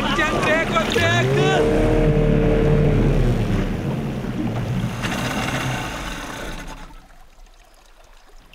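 Speedboat's outboard engines running as it skims in toward the beach, over a wash of water noise, with whoops and shouts from the passengers in the first second or so. The engine note rises about a second in, holds, and then the engine and water noise fade away over the last couple of seconds.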